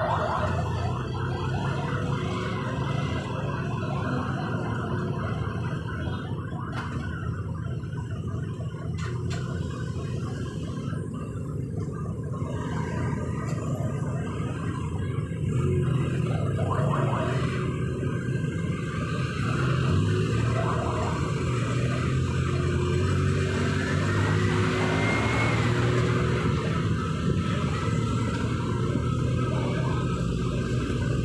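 Steady low hum of a moving vehicle with traffic noise, and a faint rising tone now and then.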